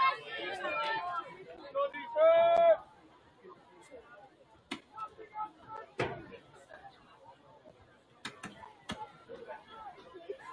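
Sideline spectators chattering, with one loud, drawn-out call from a voice about two seconds in. Then faint chatter with a few sharp knocks or claps.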